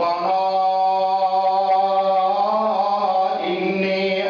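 A man's voice chanting in a drawn-out melodic style. He holds one long, steady note for about three seconds, and the melody moves on near the end.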